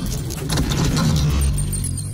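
Intro sound effect of metal plates clattering together: a rapid metallic clinking and jangling over a deep low rumble. The clinks thin out near the end as a thin high ringing tone comes in.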